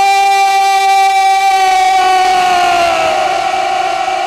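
A man's voice over the PA holding one long, high note, the drawn-out end of a recited line, sliding slightly lower after about two and a half seconds.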